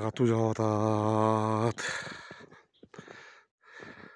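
A man's voice holds one long, steady low vowel for about two seconds, drawing out a word, then fainter breathy noise follows.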